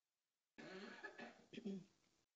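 A person coughing, a short run of coughs starting about half a second in.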